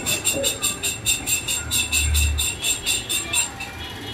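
Rapid, evenly spaced clicking, about six or seven clicks a second, as a black part of a rifle scope is twisted by hand; the clicking fades out near the end.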